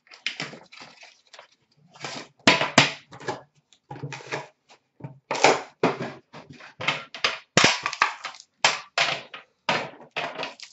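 Trading cards and Upper Deck Premier tin boxes being handled on a counter: a quick run of irregular clicks, taps and rustles, with a few sharper knocks as tins are set down.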